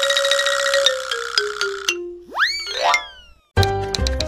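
Cartoonish editing sound effects: a shimmering held chime over a line of notes stepping down in pitch, then a quick rising swoop that trails off like a boing. About three and a half seconds in, upbeat music starts with a bass beat and short plucked notes.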